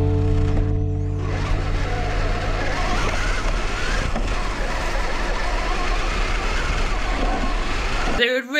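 Radio-controlled crawler truck driving over leaf-covered forest ground, heard from a camera mounted on the truck: a steady noisy rush of motor, drivetrain and tyres. Rock backing music carries on for about the first second, then fades out.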